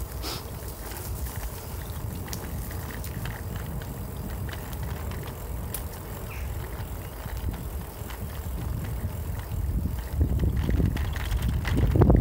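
Bicycle riding along a tarmac path: steady low tyre rumble with wind buffeting the microphone, growing louder over the last couple of seconds.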